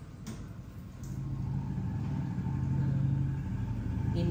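A steady low hum, like a small motor running, that comes up about a second in and grows louder.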